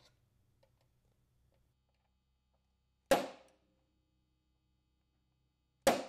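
Two sharp hammer taps on a center punch, about three seconds apart, each with a brief metallic ring, punching hole centers for a rack latch in a snowmobile tunnel.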